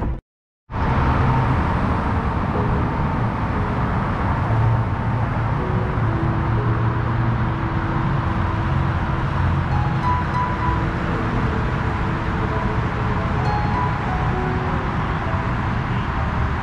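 Soft background music with long held notes over a steady low rumble, after about half a second of silence at the start.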